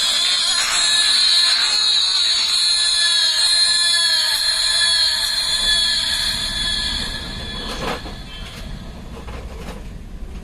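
Music playing through small dome speaker drivers. It sounds thin and shrill, nearly all high pitches with almost no bass. It drops in level about seven seconds in.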